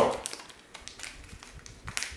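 Scattered small clicks and crinkles of fingers handling a small packet of fly-tying hooks, with a sharper click near the end.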